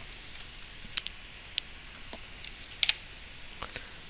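A few scattered computer keyboard key presses and clicks, sparse and faint, spread across the few seconds.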